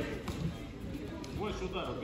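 Indistinct background voices in a large sports hall, quieter than the calls around them, with a faint spoken phrase near the end.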